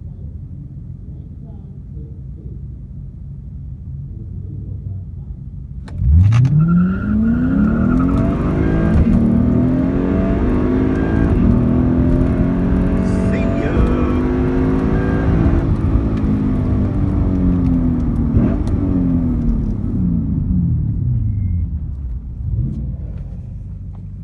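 Lexus IS F's 5.0-litre V8 with an X-Force cat-back exhaust idling at the start line, then launched hard about six seconds in: a sudden loud jump and engine pitch climbing under full throttle, held high through the run, then falling away over the last few seconds as the car slows.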